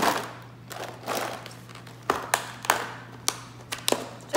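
A plastic food container being set down on a countertop and its lid handled: a sharp knock at the start, then scattered clicks and taps.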